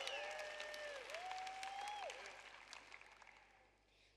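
Audience applause with scattered claps and a couple of drawn-out calls from the crowd, dying away over about three seconds.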